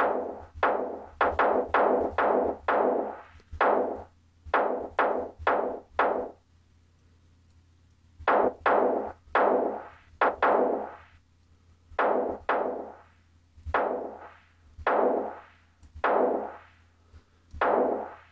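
Sampled Ludwig Black Beauty snare drum, played over and over from Ableton Live's Sampler with the auxiliary envelope driving the shaper amount to give each hit a bit more breath. The hits come about two a second in three runs, with a pause of about two seconds after the first run and a shorter one in the middle.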